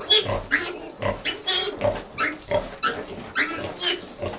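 A litter of five-day-old piglets squealing and grunting in short, rapid calls while they suckle a sow, over steady low grunts.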